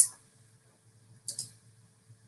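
A single short computer click a little over a second in, advancing the presentation slide; otherwise faint room hiss.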